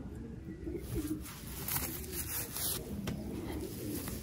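Domestic pigeons cooing, a low continuous murmur of overlapping coos.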